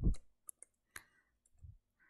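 A few faint, separate clicks of computer keys being typed, with a soft low thump near the end.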